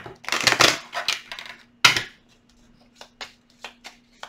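A deck of tarot cards being handled and shuffled: rustling in the first second, a sharp snap of cards just before two seconds in, then a run of short soft clicks, about three a second.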